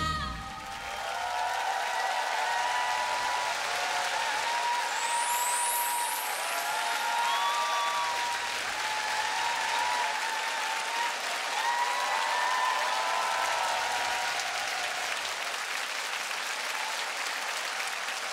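Studio audience applauding and cheering: steady clapping with shouts rising over it. The song's last sung note ends just as the applause begins.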